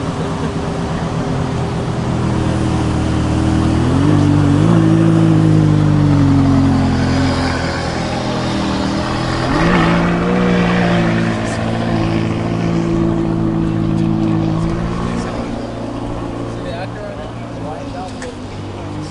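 A car engine running and revving: its pitch rises about four seconds in, holds and falls back, then rises again about ten seconds in and holds for several seconds before easing off.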